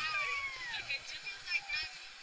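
A rider's long squeal on a roller coaster that slides down in pitch over about a second, mixed with laughter and shouting from other riders.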